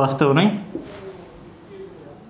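A man's voice says one short word at the start. It is followed by a quiet room and a brief, soft scratch of a marker being drawn across a whiteboard.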